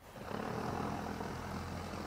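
Steady low hum of an idling engine under a faint hiss.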